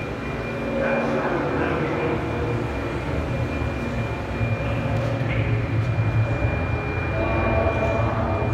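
Ambient electronic drone: a low rumble under a steady, thin high-pitched tone, with faint gliding sounds about a second in.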